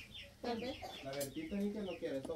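Chickens clucking, with a run of short, high, falling chirps every few tenths of a second, under faint background voices.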